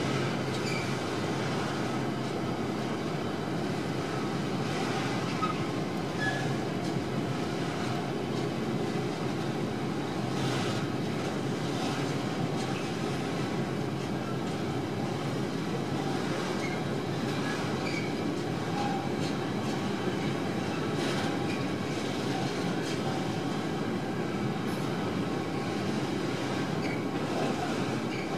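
A freight train of open container wagons passing over a road level crossing: a steady, continuous rolling noise of wheels on the rails with no letup.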